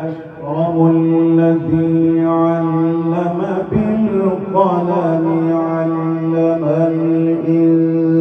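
A man reciting the Quran in the melodic tilawah style, amplified through a microphone. He holds long steady notes with ornamented, wavering runs between them.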